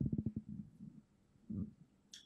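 Faint, muffled low voice sounds: a rapid pulsing murmur that dies away within the first second, then a brief low sound about one and a half seconds in.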